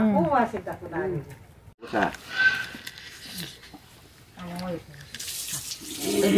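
Short bursts of a person's voice with pauses between them, and a faint rustling hiss near the end.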